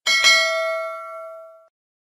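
Notification-bell chime sound effect from a subscribe-button animation: a single bright bell ding that rings and fades out over about a second and a half.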